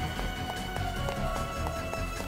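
Fast-paced background music: a driving beat with quick, evenly spaced ticks about five a second over sustained held tones.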